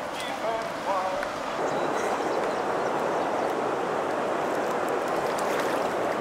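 Steady rush of flowing river water that grows louder about a second and a half in and then holds even.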